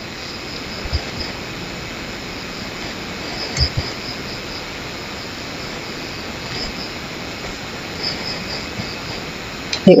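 A steady background hiss with faint, high chirping in short runs that sounds like crickets. There are two soft low thumps, about one and three and a half seconds in.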